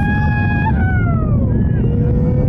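Steady low rumble of Starship's Super Heavy booster engines climbing after liftoff, with spectators' long whooping yells over it: one held and then falling off in pitch near the start, another long steady one near the end.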